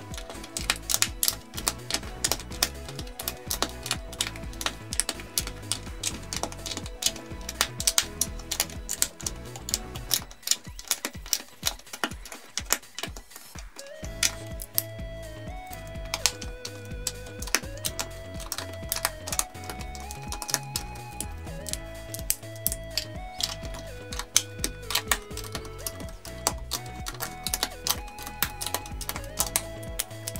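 Plastic LEGO bricks clicking rapidly and continuously as they are handled and pressed together, over background music whose melody comes in about halfway.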